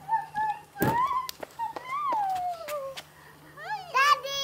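Wordless high-pitched excited vocalizing, squeals and long sliding 'aww'-like cries, with a single knock about a second in.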